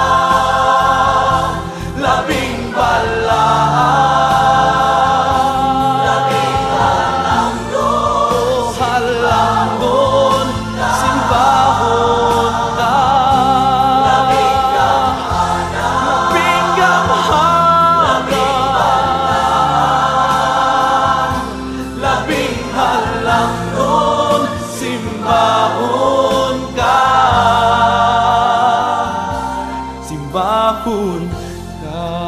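Christian worship song: a choir singing a melody over steady instrumental accompaniment.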